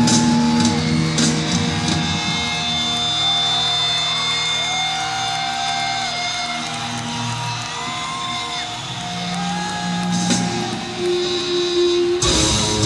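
Live hard rock band playing an instrumental passage, with electric guitar holding notes and bending them up and down in pitch over the band.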